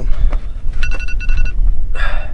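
An electronic alarm going off at noon, beeping twice in quick succession about a second in, over a steady low rumble.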